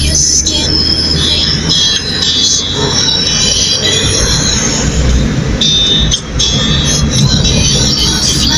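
Driving noise inside a moving car: a steady low engine and road rumble, with high-pitched squealing tones coming and going over it.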